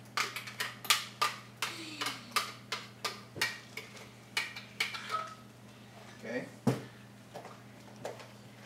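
A spoon knocking and scraping against a blender jar while thick blended avocado sauce is tapped out into a container, about three sharp knocks a second for the first five seconds, then a few scattered ones.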